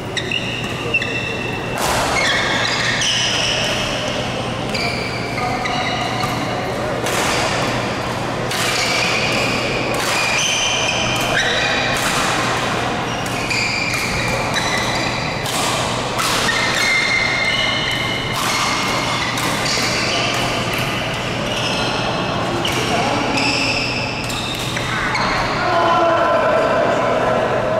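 Badminton rally in a large echoing hall: sharp cracks of rackets striking the shuttlecock, many short high squeaks of shoes on the court floor, and a steady low hum underneath.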